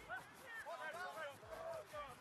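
Faint, distant shouts and calls of rugby players on the pitch: several short, high voice calls during open play.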